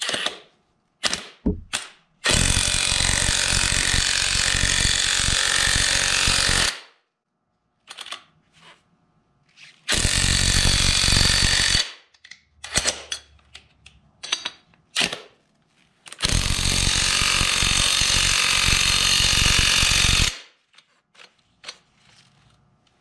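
Tenwa half-inch-drive cordless brushless impact wrench hammering on a bolt in three long bursts, about four, two and four seconds long, with short clicks and knocks between them.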